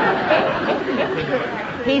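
Studio audience laughter dying away after a punchline. A woman's laugh and speech start near the end.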